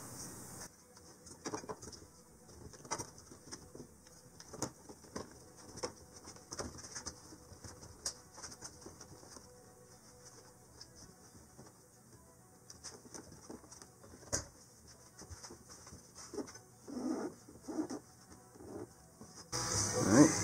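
Faint, scattered clicks and taps of hands working the plastic fuel-pump bezel ring as it is turned and tightened down onto the fuel tank.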